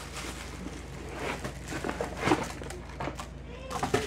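An electric mosquito zapper's cardboard box being opened and the zapper, in a plastic bag, pulled out, with irregular rustling of cardboard and plastic. A low steady hum runs beneath.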